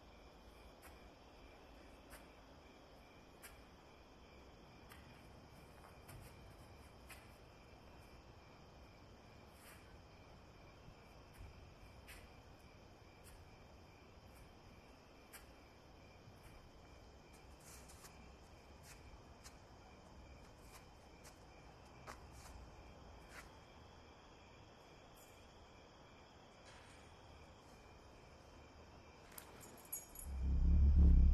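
Near silence: faint, steady cricket chirring in the film's night ambience, with a few soft clicks.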